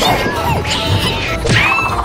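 Cartoon fight sound effects over background music: hits and crashes, then a rising, held whistle near the end as a character is sent flying.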